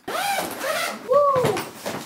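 Zipper of a hard-shell suitcase being pulled open around the case, a rasping sound in two long pulls, the second louder.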